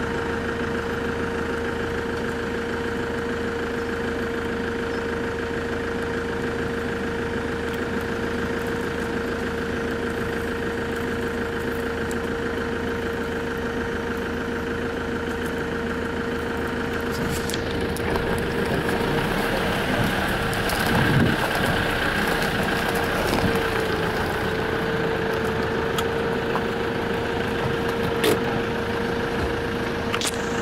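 A vehicle engine idling with a steady hum. From about eighteen seconds in, a rougher noise joins it and the sound grows a little louder.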